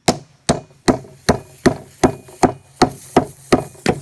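Rubber hockey puck hammering the top of an aluminium beer can standing on a wooden picnic table: about eleven hard, sharp blows at an even pace of roughly three a second, beating the can until it bursts open.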